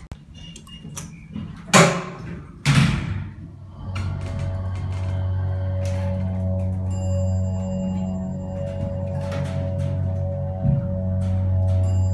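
Elevator doors closing with two loud thunks about two and three seconds in, then the Dover Oildraulic hydraulic elevator's pump motor starts about four seconds in and hums steadily as the car rises.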